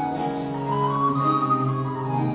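Baroque recorder playing a melody over a basso continuo of theorbo and viola da gamba, with no voice; the melody steps up to a held higher note about a second in.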